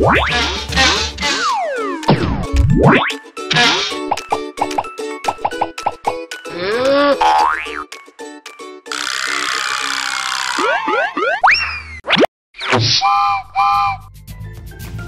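Cartoon sound effects over cheerful children's background music: springy boings and slide-whistle-like glides sweeping up and down, a burst of hiss near the middle, and two short toots near the end.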